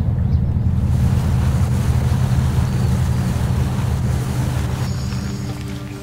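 Steady low rumble of a boat engine running, with wind and water noise over it. It fades near the end as music comes in.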